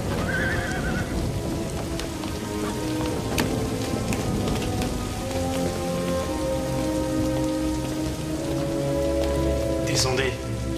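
Steady heavy rainfall, with sustained notes of an orchestral film score swelling underneath in the second half.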